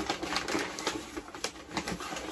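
Printed wrapping paper crinkling and tearing as a package is unwrapped by hand, an irregular crackle.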